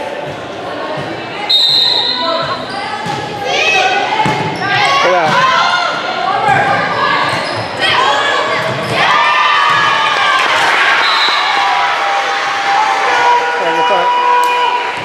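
Volleyball rally in a reverberant gym: a short high whistle blast about a second and a half in, then the ball being struck and players and spectators shouting through the rally.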